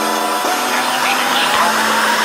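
Electronic dance music in a breakdown: a sustained hissy synth wash over a held low note, with no drums or bass. A short falling blip comes about half a second in, and the wash grows slightly louder toward the end.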